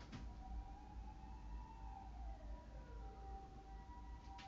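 Faint distant siren whose wail slides slowly down in pitch through the middle, over a steady high tone, with a light click at the start.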